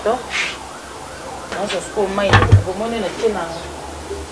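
A metal pot lid set down onto an aluminium cooking pot, a single knock about two and a half seconds in, over a voice with gliding pitch.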